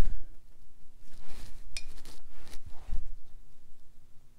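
A few light taps and clinks of a watercolour brush against the painting gear, one of them with a short high ring a little under two seconds in.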